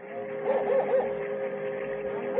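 Radio-drama sound effect of a steamboat whistle: a steady two-note chord held without a break. Short repeated calls sound over it.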